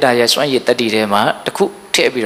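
A man speaking Burmese in a steady, continuous Buddhist sermon, with short breaks between phrases.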